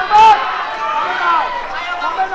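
Spectators shouting and calling out to the fighters, many raised voices overlapping, with one loud high-pitched shout just after the start.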